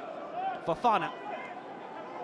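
A man's commentary voice, a word or two about half a second in, over steady stadium crowd noise.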